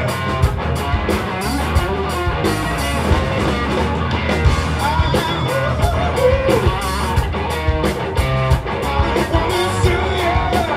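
Live rock band playing loudly: electric guitar over bass and drums, with steady cymbal hits.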